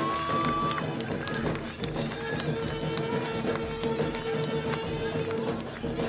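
Live Jharkhand folk-dance music: frequent drum strikes under pitched melody, with one long note held through the middle.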